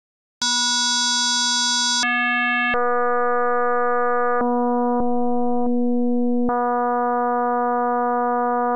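FM synth patch in Pure Data sounding a steady 243 Hz tone that starts about half a second in. Its timbre changes in sudden steps as the harmonicity and modulation index are changed: very bright at first, duller in the middle, brighter again near the end.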